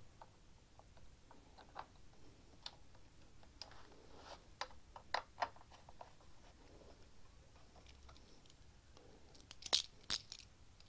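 Faint scattered clicks and taps of a small aluminium bracket being handled and worked into place against a mower's plastic throttle-control housing. Near the end comes a louder cluster of sharp metal clinks.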